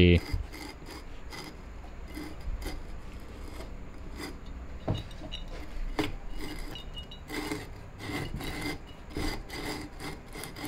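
Rusted cast cylinder of a seized Honda Z50R 50cc engine being worked up its studs by hand: rough metal-on-metal scraping and rubbing, with scattered light clicks.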